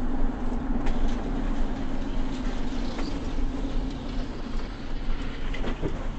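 Steady road and engine noise heard inside a vehicle cruising at freeway speed: a low drone under tyre rumble, with a few faint clicks.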